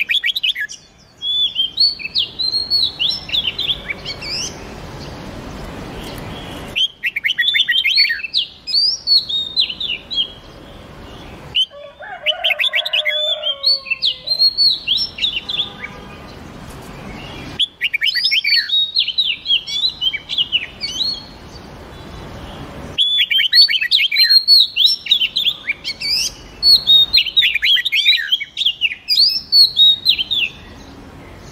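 Red-whiskered bulbul and oriental magpie-robin songs: about six bursts of quick, high whistled phrases, each a few seconds long, with short pauses between. Lower notes come in during the middle burst.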